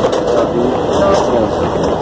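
A person speaking over a steady background of noise.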